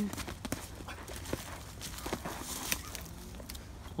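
Footwork and glove strikes in a boxing sparring round on bare dirt: irregular, sharp thuds and scuffs at uneven spacing.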